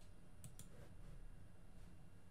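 Two quick computer mouse clicks about half a second in, over a faint low room hum.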